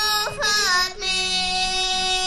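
A child's voice singing a Bulgarian folk song, holding long high notes with quick ornamental turns between them, over a low sustained accompanying note.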